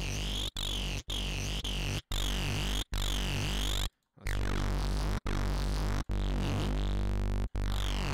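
Heavily distorted synth played as a run of short held notes through stacked Bitwig Amp devices whose cabinet size is being modulated, giving a swooping, comb-filtered sweep over a strong low end. Each note is cut off by a brief gap, with a longer break about four seconds in.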